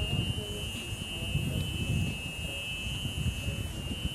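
Electric Club Car golf cart's warning buzzer sounding a steady high-pitched tone as the cart backs away, over gusty wind rumble on the microphone.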